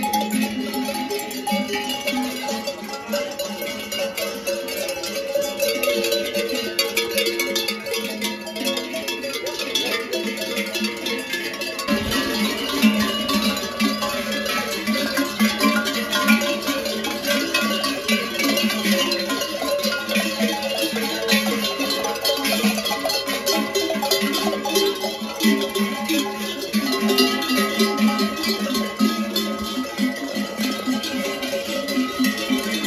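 Many large festive cowbells on the cattle's wooden collars, clanging and ringing together without a break as the herd walks.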